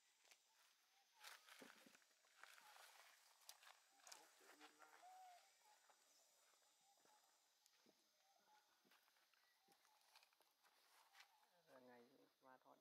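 Near silence: faint scattered clicks and rustles, with a brief faint squeak about five seconds in.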